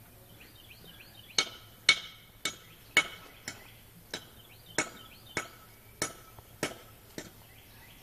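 Sharp knocks on hollow concrete cinder blocks, ten in all in two runs of five, about two a second, each with a short ringing tail.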